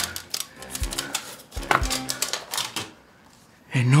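Quick, irregular crackling and clicking of photographs or papers being handled, over light background music.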